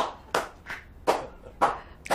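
One person clapping hands slowly and evenly, about six claps at roughly two a second.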